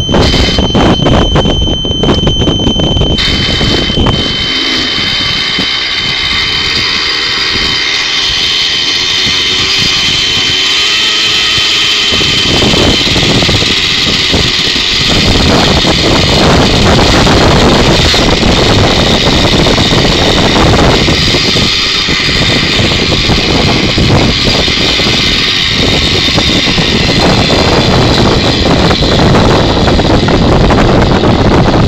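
Synergy N5 nitro RC helicopter being started: an electric starter cranks the glow engine for about the first three seconds, then the engine catches and runs steadily. From about halfway it runs somewhat louder as the rotor spins up.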